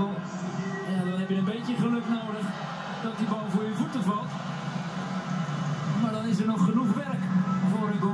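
Sound of a televised football match played through a TV: a man's commentary voice over the steady background of the stadium broadcast.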